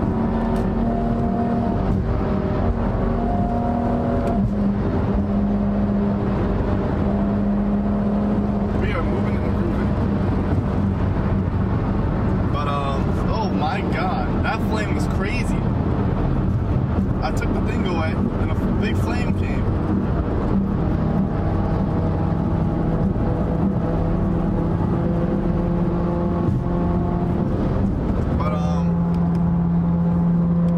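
Steady engine drone and road noise inside a car cruising at highway speed. The engine note shifts to a new steady pitch a few times.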